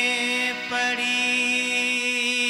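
A man singing a devotional chant to harmonium, holding a long steady note; the voice dips briefly about half a second in, then carries on.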